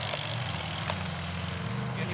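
Series Land Rover off-road competition car's 3.5-litre Rover V8 engine running steadily as it drives across the course.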